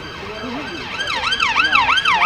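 Emergency-vehicle siren in fast yelp mode, sweeping up and down about three times a second; it comes in about a second in and grows louder.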